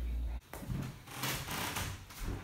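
A low steady hum that stops abruptly shortly in, followed by soft, uneven rustling and knocking handling noises in a small room.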